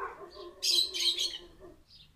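Small birds chirping faintly in the background, with a short hiss about half a second to a second in.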